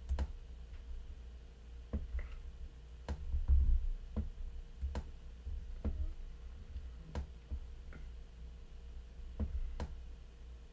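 Computer mouse clicks, single sharp clicks spaced irregularly about a second apart, over a steady low hum, with one louder dull thump about three and a half seconds in.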